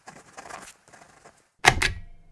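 Scratchy pen-on-paper writing sound effect in short strokes with small gaps. Near the end come two sharp clicks in quick succession, the loudest sounds here.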